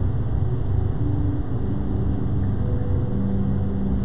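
Steady low machine hum of the studio's air-handling system, with a faint held tone joining about one and a half seconds in.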